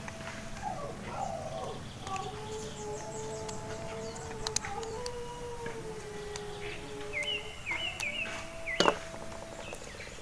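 Small clicks from a wire connector being fitted into a DC-DC buck converter's input terminal, the sharpest just before the end. Behind them run faint steady background tones, and a bird gives a short repeated chirping call about seven seconds in.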